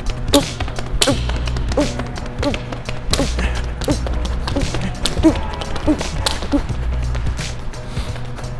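Quick, light footfalls of sneakers tapping through an agility ladder on a gym floor, several steps a second, over background music with a steady bass.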